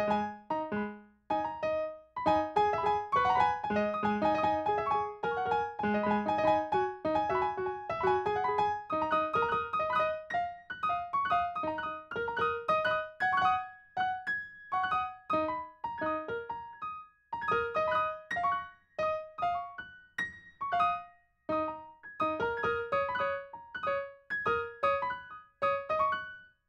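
Solo piano playing a melody of separate notes over lower chords, with a few short breaks between phrases.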